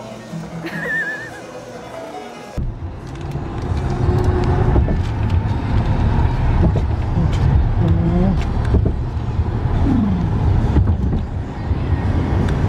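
Road noise inside a moving car: a loud, steady low rumble that starts abruptly about two and a half seconds in, with brief voices over it. Before that, a quieter stretch with a few short voices.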